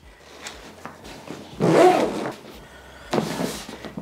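Zipper on a Dyneema GORUCK GR1 backpack being pulled closed, in two short rasping runs: the longer, louder one about one and a half seconds in, a shorter one about three seconds in.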